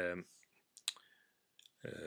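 A man speaking Finnish, with a pause about a second long holding two short, sharp clicks in quick succession.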